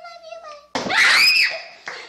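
A girl's voice speaking briefly, then a loud, high-pitched scream about three-quarters of a second in that rises and falls in pitch and dies away within a second.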